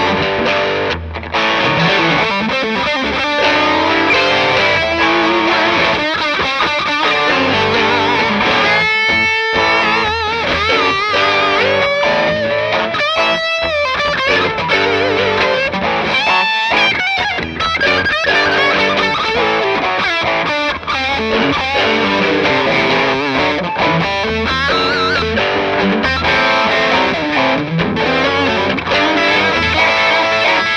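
Fender Rarities Telecaster with a quilted maple top, played through an overdriven amp. Single-note lead lines with string bends and vibrato are mixed with chords.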